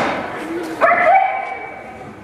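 A young stage performer's voice in a high, drawn-out cry starting about a second in, after the fading tail of a noisy crowd commotion.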